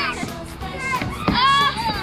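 Children's high-pitched shouts and squeals at play, over background music.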